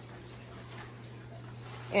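A steady low hum under faint room noise, with no distinct event.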